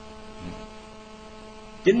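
Steady electrical hum of several fixed tones from the microphone and sound system. A man's voice comes in near the end.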